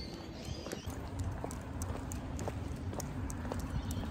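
Footsteps walking briskly on a concrete footpath, a regular light tapping, over a steady low rumble of wind and handling on a hand-held phone microphone.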